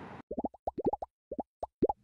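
A quick run of about a dozen bubble-pop plops, each a short blip rising in pitch, coming in uneven clusters.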